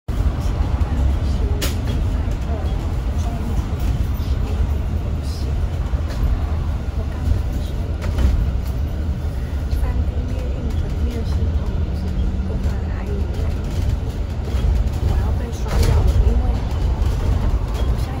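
Steady low rumble of a double-decker bus in motion, heard from inside on the upper deck, with a few sharp clicks or rattles.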